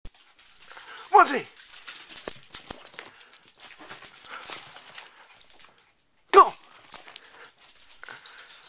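A small dog scampering about in play, its scuffling steps and panting heard between two loud shouts.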